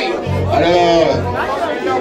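A congregation praying aloud all at once, many overlapping voices, over a church band playing low bass notes in the first half.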